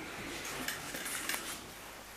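Quiet handling noises: light rustling with a few small clicks and clinks as supplies are picked up from a shelf.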